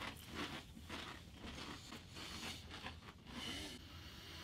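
Several people chewing Pringles potato crisps with their mouths closed: faint, irregular crunching throughout.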